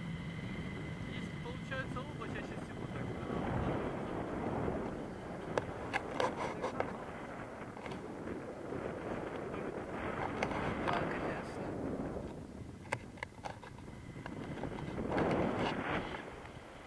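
Wind rushing and buffeting over the camera microphone in flight under a tandem paraglider, swelling and easing in gusts. Muffled voices and a few sharp clicks come through it.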